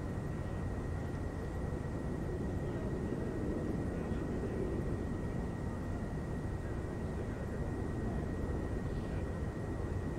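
Steady low rumble of distant engine noise, swelling slightly a few seconds in, with a faint steady high whine over it.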